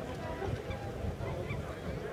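Short shouts and calls from players and bench at an outdoor football match, scattered and overlapping, with no clear words.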